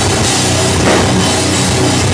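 Thrash/groove metal band playing live: distorted electric guitars and bass over a drum kit with cymbals, loud and continuous.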